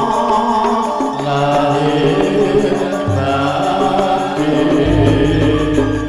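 Javanese gamelan ensemble playing tayub music: bronze kettle gongs and metallophones ringing in sustained notes, with a male voice chanting over them. A deep low note starts about five seconds in and keeps ringing.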